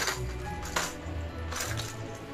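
Background music, with plastic blister packs of fishing lures clicking and crackling as they are handled: a sharp click at the start and two more crackles about a second apart.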